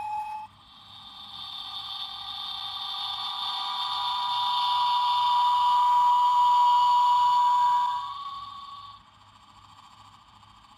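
Hallmark Keepsake Star Trek transporter chamber ornament playing its transporter-beam sound effect through its small speaker: a shimmering whine that swells over several seconds and cuts off about eight seconds in. The ornament is sounding again after its corroded battery contacts were cleaned. A brief tone from an earlier sound breaks off just after the start.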